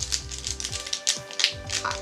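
Foil Pokémon Sword and Shield booster pack wrapper crinkling as it is handled and opened, a quick run of small crackles, with soft background music.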